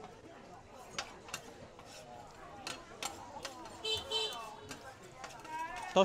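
Two metal spatulas clicking and scraping on a flat steel griddle as a vendor turns and tosses fried potato balls, with sharp irregular clicks every second or so over faint crowd chatter.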